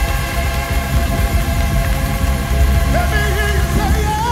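Black gospel choir record played on vinyl: the band holds steady chords over a heavy bass. A voice slides in briefly about three seconds in.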